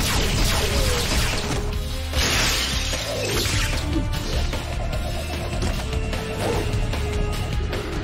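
Action cartoon score music with two loud crash sound effects in the first half, one of them glass cracking as a body slams into a plate-glass window.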